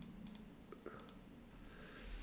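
Several faint, quick key clicks in the first second or so as 125 × 30 × 20 is keyed into a Casio ClassWiz calculator.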